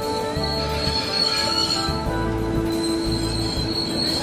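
Steel train wheels squealing: several sustained high-pitched tones that shift in pitch, with background music under them.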